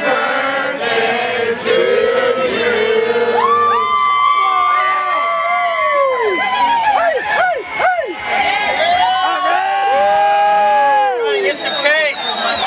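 Party crowd cheering and shouting, with several long held whoops that fall away at the end, over mixed voices.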